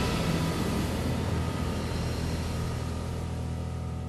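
Closing theme music of a TV programme dying away in a sustained, hazy tail that slowly gets quieter.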